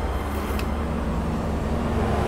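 Steady low rumble of background noise, with a few faint ticks about half a second in.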